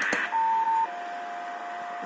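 Steady whistling tones from an HF ham radio receiver over a hiss of band noise: a higher tone for about half a second, then a lower one that holds steady. The tones are interference radiated by a plugged-in Samsung phone charger, sounding like a CW (Morse) carrier.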